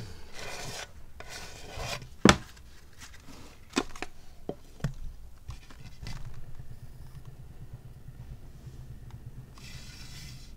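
Turntable being spun by hand, with the hand rubbing and scraping against it. There are a few sharp knocks in the first five seconds, then a steady low rumble as it keeps spinning.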